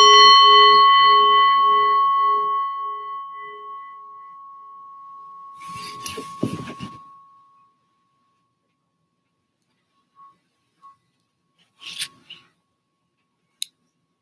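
A brass singing bowl struck once with a wooden striker, ringing with a wavering low tone under a clear higher one and fading away over about seven seconds: the signal that opens the meditation period. About six seconds in there is a short burst of rustling and a soft knock as the striker is handled, then a few faint clicks.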